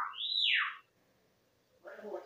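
Whistled notes: a short rising note, then one that sweeps up high and falls back down, like a wolf whistle, ending a little under a second in.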